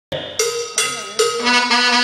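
Live band music: saxophones play held notes that come in one after another, about every 0.4 s, building into a fuller chord as a song opens.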